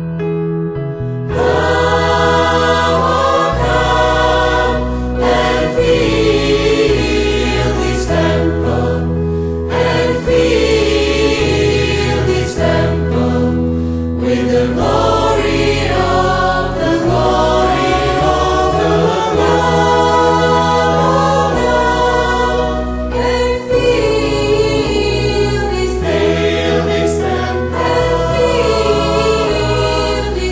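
Church choir singing a sacred song with instrumental accompaniment and a moving bass line; the full sound comes in about a second in.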